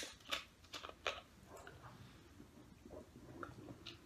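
Faint handling of a plastic soda bottle: a few light clicks of the screw cap in the first second and a half, then soft gulping as the soda is drunk.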